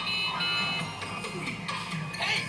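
Television audio: a high, steady electronic tone held for about the first second, then fainter music and voices.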